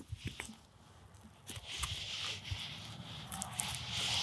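Faint sounds of a knife filleting breast meat off a pheasant's breastbone: a few small clicks, then a soft, uneven scraping of the blade along the bone and through the meat that grows a little louder toward the end.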